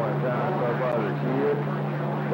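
CB radio receiver picking up distant stations: faint, garbled voices over static, with a steady low hum that runs on under them.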